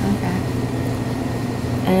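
Steady low machine hum of room noise between speech, with a woman starting a word near the end.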